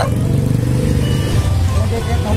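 Small motorcycle engine idling, a steady low-pitched running sound.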